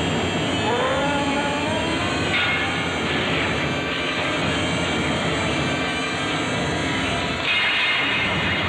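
Film soundtrack sound effect: a loud, steady roaring rumble, with a few rising wailing tones over it in the first second or so.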